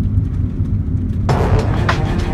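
Low, steady rumble of a car's engine and tyres heard from inside the cabin while driving. About a second and a half in, music with sharp beats starts abruptly over it.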